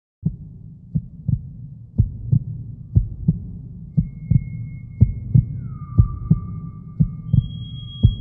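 Heartbeat sound effect: paired low thumps about once a second over a low drone. Thin, high, steady tones join about halfway through, one of them sliding down as it comes in.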